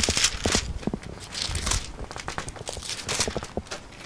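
Thin Bible pages being leafed through to find a passage: a run of short papery rustles and soft ticks.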